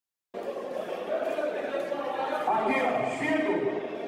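Silence, then about a third of a second in, a sudden cut to men talking among a crowd of spectators in a large hall.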